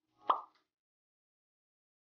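A single short pop sound effect, about a quarter of a second in.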